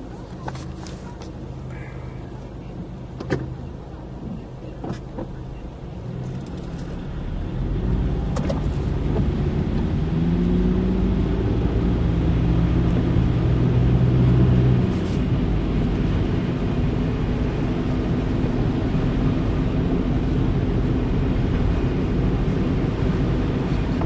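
A car's engine heard from inside the cabin, idling quietly at first with a few light clicks. About a third of the way in it pulls away, and the engine note rises as it accelerates. It then settles into steady driving noise of engine and tyres on a wet, snowy road.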